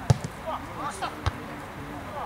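A football kicked on a grass pitch: a sharp thud just after the start, and a second thud about a second later, with players' shouts in between.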